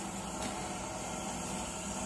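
Steady hum and hiss of a Citronix ci1000 continuous inkjet printer running with its ink system on and its high voltage switched on, with one faint tick about half a second in.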